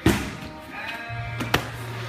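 Background music over grappling on mats: a loud thump right at the start and a sharp slap about a second and a half later, from bodies hitting the mat.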